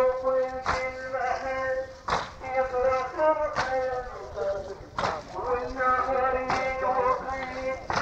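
A chanted Shia lament (latmiyya) on an old tape recording: a sustained melodic chant, kept in time by mourners beating their chests in unison, with a sharp slap about every one and a half seconds.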